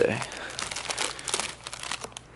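Plastic bait packs crinkling and rustling as they are handled and shuffled in a clear plastic tackle box, in an irregular run of small scratchy crackles.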